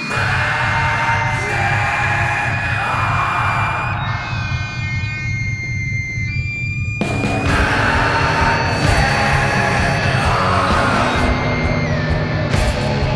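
Loud instrumental passage of an alternative rock song, with held high tones ringing over a heavy low end. The bass and low end drop away for about three seconds in the middle, then the full sound comes back in.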